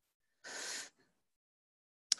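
A person's short intake of breath, lasting about half a second and starting about half a second in.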